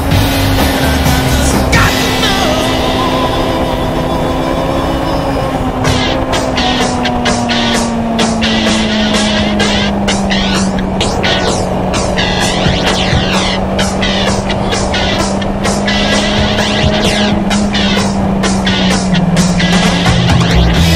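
Motorcycle engine running at a steady cruise, its note easing slowly lower through the stretch. From about six seconds in, wind buffets the microphone.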